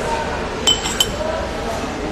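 Glassware or tableware clinking: a few sharp, ringing clinks in quick succession near the middle, over the murmur of a busy room.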